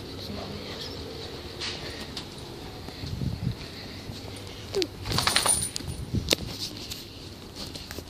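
Handling noise from a phone carried while walking: fabric rubbing against the microphone, with a few soft bumps partway through and a burst of sharp clicks and knocks from about five to six seconds in.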